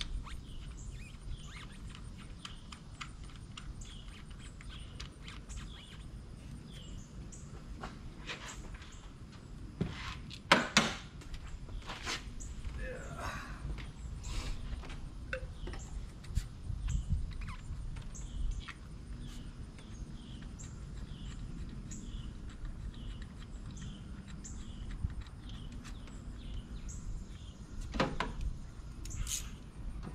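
Scattered clicks and knocks of ignition coils and engine parts being handled and pushed back down into the spark plug wells of a Toyota V6, loudest about ten seconds in. A bird chirps over and over in the background over a low steady rumble.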